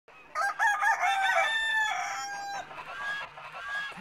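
Rooster crowing once: a few short notes, then one long held note. Fainter short calls follow near the end.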